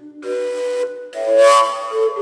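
Fujara, the long Slovak overtone flute, playing sustained notes. A louder, breathier note swells up about a second in.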